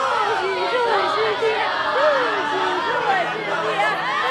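A group of people talking and calling out over each other at once, several voices overlapping into lively chatter.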